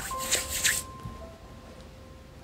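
Palms rubbed briskly together: a few quick rubbing strokes in about the first second, over soft background music with a couple of held notes.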